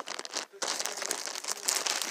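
Packaging being rummaged through and handled, making dense, irregular crinkling and rustling.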